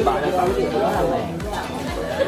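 Overlapping voices of a group of people chatting together around a dining table.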